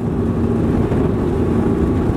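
Twin Volvo Penta D6 440 hp diesel engines on stern drives running flat out under full-throttle acceleration, a loud steady drone mixed with the rush of wind and water past the open cockpit.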